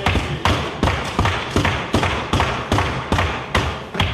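Members of parliament banging their desks in approval: a rapid, uneven run of thumps, several a second, over a hubbub of the chamber.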